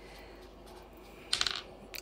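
A brief jingling clatter, like small hard objects dropping, about a second and a half in, over faint steady room hiss.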